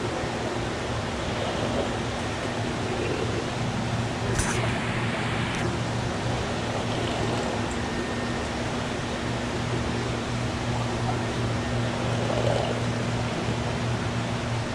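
Steady hum and rushing water noise of an aquarium shop's air pumps and tank filters, with a short click and hiss a little over four seconds in.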